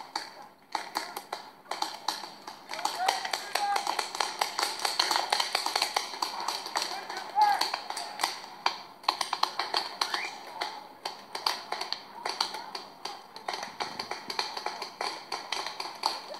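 Paintball markers firing in rapid, irregular pops, with voices calling out briefly in between.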